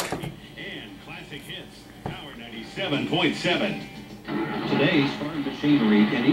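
Small speaker of an early-1980s GE portable TV/radio playing a radio broadcast, voices and music coming and going as the dial is tuned. The set is just coming to life through its dirty controls. A sharp click comes about two seconds in.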